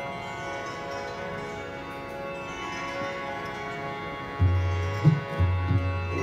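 Steady drone of Indian classical accompaniment, harmonium and plucked strings with a chime-like shimmer. About four and a half seconds in, deep tabla bass strokes come in and become the loudest sound.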